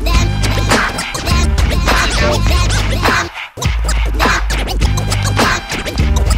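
DJ scratching a vinyl record on a turntable over a hip-hop beat, the record pushed back and forth in quick strokes. The beat cuts out briefly a little past halfway, then comes back in.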